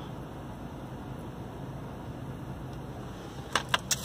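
Steady low hum inside a car cabin. A few short sharp clicks come near the end.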